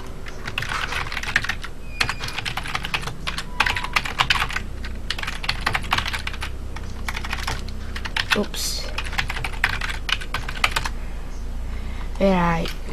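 Computer keyboard being typed on in quick runs of keystrokes with short pauses, as a username and password are entered, over a steady low hum.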